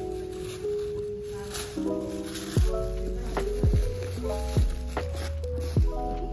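Background music: a light plucked melody, joined about two and a half seconds in by a beat with a deep bass drum and bass line.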